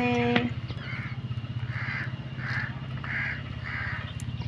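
Crow cawing in a run of short calls, about two a second, over a steady low hum.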